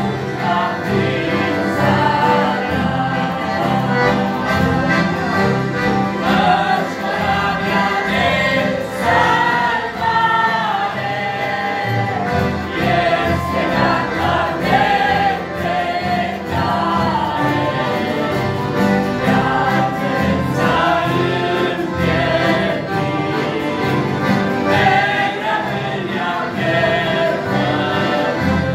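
A family choir of men, women and children singing a Romanian hymn together, accompanied by accordions that hold steady chords beneath the voices.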